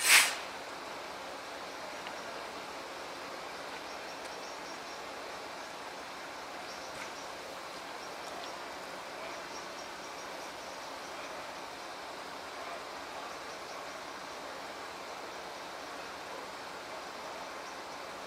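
A brief, sharp hiss at the very start, then steady low background noise at a quiet railway station where the old railcar stands at the platform.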